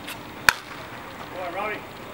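A pitched baseball smacking into the catcher's mitt: one sharp, loud crack about half a second in. About a second later comes a short voice call.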